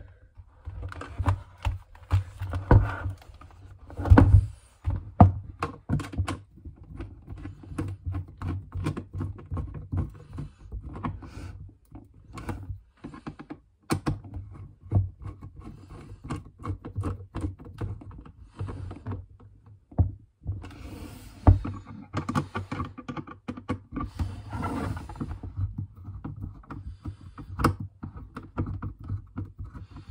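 Hand screwdriver tightening the face-mask screws on a Schutt F7 football helmet: scattered irregular clicks and knocks of the tool and hands against the plastic shell and hardware, over a low steady hum.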